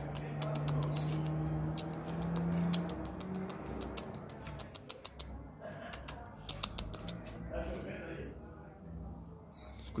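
Rapid sharp clicking and chipping notes from coleiros (double-collared seedeaters), thickest in the first seven seconds and thinning after. The birds are showing 'fibra', the keeper's word for male coleiros in aggressive display. A low steady hum sounds under the notes for the first three seconds.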